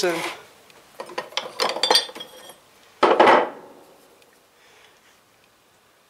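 Steel wrist pin, piston and connecting rod from a Chevy small-block being handled on a wooden workbench: a run of light metallic clinks and knocks between about one and two and a half seconds in, then one short scrape about three seconds in.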